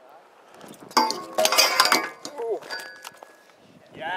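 BMX bike's pegs landing on and grinding along a metal flat rail: a sudden loud metallic scrape and clank about a second in that lasts about a second, followed by the rail ringing briefly.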